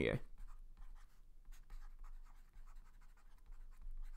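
Stylus tip scratching and tapping on a tablet screen while handwriting a word, a faint run of short, irregular strokes.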